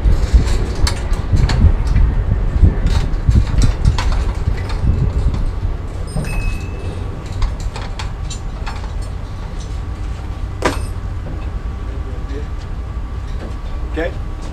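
Irregular metallic clinks and knocks as the plugs on a fire department connection's inlets are worked loose, over a steady low rumble.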